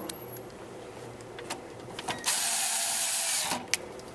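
A small power screwdriver runs once for about a second and a half, driving in the screw that secures the controller card's bracket to the server chassis. A few small metallic clicks come before and after it.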